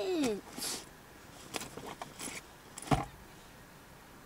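Faint clicks and rustles of objects being handled inside a car cabin, with one dull thump about three seconds in.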